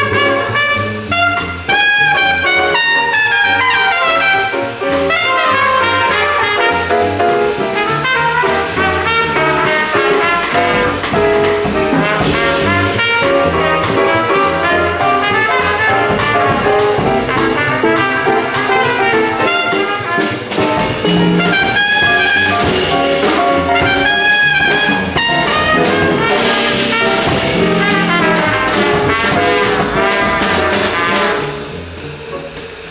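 Trumpet playing a jazz solo of quick, moving melodic lines over a band accompaniment with cymbals. The playing stops just after the end.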